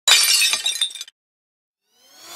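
Glass-shattering sound effect: a sudden crash followed by a few clinking breaks, dying away after about a second.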